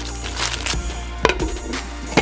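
Background music with a steady bass line, and one sharp knock a little past a second in.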